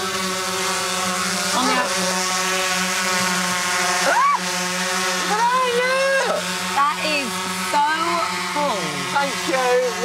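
Multirotor drone hovering, its propellers giving a steady hum of one even pitch.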